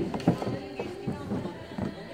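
A few light knocks of a hollow plastic rocking ride being climbed onto and handled by a small child.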